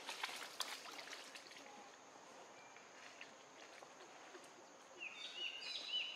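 Faint forest ambience: crackling rustles of leaves and twigs in the first second and a half, a steady thin high-pitched tone throughout, and a few short bird chirps near the end.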